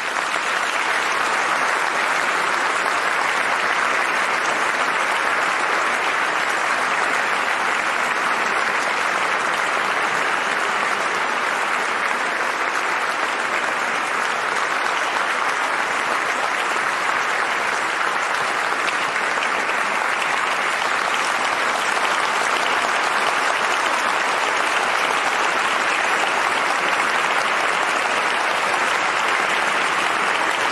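Audience applauding: a dense, steady round of clapping that holds at an even level.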